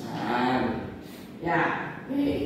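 A person's voice speaking in the lecture, with drawn-out vowel-like sounds.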